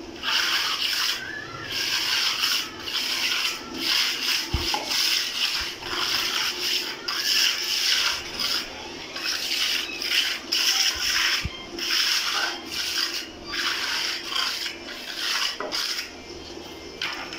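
Steel trowel scraping and smoothing a freshly laid wet cement floor, in repeated strokes about one a second.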